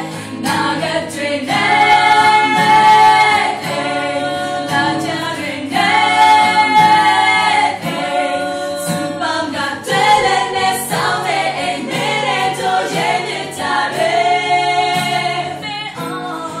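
A group of young women singing together in harmony, with several long held notes, to a strummed acoustic guitar.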